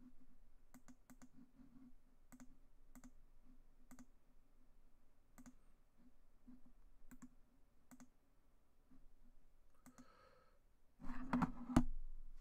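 Faint, irregular clicks of a computer being operated, single or in small groups a second or so apart. Near the end, a louder burst of knocks and handling noise.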